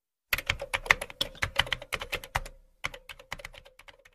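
A typing sound effect: rapid keyboard key clicks, about six or seven a second, in two runs with a short pause between them.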